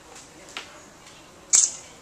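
Handling noise from working a clay slab around a tube on a work table: a sharp tap about half a second in, then a louder, brief, high-pitched crackling snap about a second and a half in.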